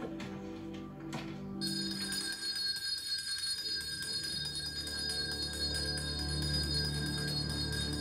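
Film soundtrack played over home-cinema speakers: music, then from about one and a half seconds in a hand bell ringing steadily, with a low drone growing louder underneath.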